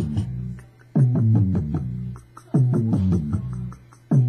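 A short melodic loop of several pitched notes over a bass line, played back from a Maschine Studio beat-making setup. The phrase starts sharply about every second and a half, fades, and drops out for a moment before each restart.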